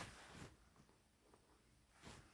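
Near silence, with a faint, brief rustle in the first half second as powdered agar jelly mix is poured from a foil sachet into a pot of water.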